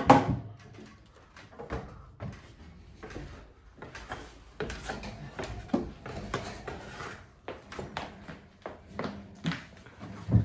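Scattered knocks, bumps and shuffles of people moving about and handling things in a garage, with the loudest bump right at the start. Clothing rubs against the microphone as the camera is carried and jostled.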